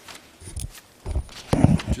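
A few dull, low thumps in a room, the loudest cluster in the last half second.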